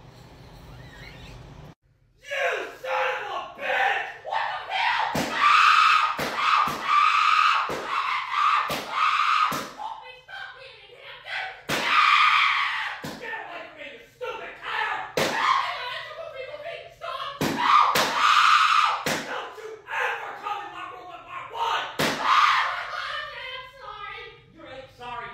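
A high-pitched voice making drawn-out vocal sounds, with many sharp knocks or smacks breaking in at uneven intervals.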